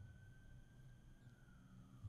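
Near silence: faint room tone, with a faint thin tone that drifts slowly down in pitch in the second half.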